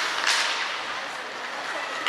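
Ice skate blades scraping the ice in one short, sharp hiss about a quarter second in, over the steady noise of the ice rink.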